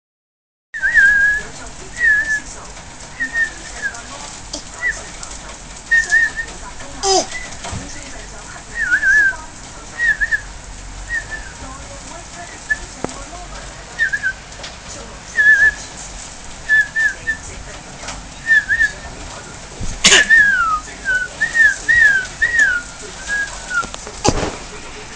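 A person whistling a string of short, off-key warbling notes, roughly one or two a second, several sliding down in pitch near the end. A brief knock about twenty seconds in, and a fainter one about seven seconds in.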